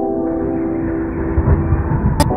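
Opening of a new song: a held chord over a loud, dense rumbling noise layer, which came in abruptly just before.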